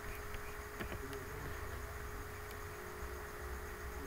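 Steady faint background hiss with a low electrical hum and a thin steady tone, and a faint click about a second in.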